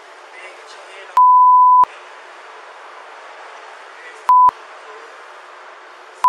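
Censor bleep: a single steady high tone that blanks out the audio twice, once for under a second a little over a second in and once briefly about four seconds in, bleeping out spoken words. Between the bleeps there is a low background of muffled voices and outdoor noise.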